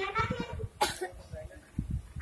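A girl's voice speaking into a microphone, pausing partway through, with a single short, sharp sound a little before the middle.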